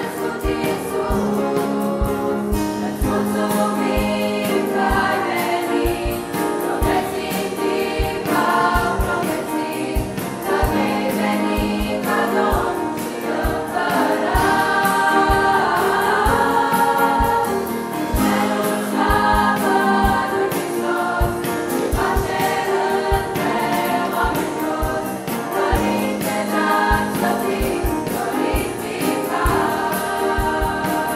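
A choir singing a Romanian Christian Christmas carol (colind) in sustained, changing chords.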